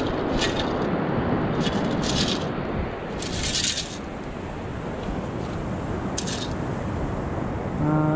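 Shells and gravel rattling in a perforated metal sand scoop as it is shaken to sift out the sand, in several short bursts, the longest a little over three seconds in, over a steady wash of surf.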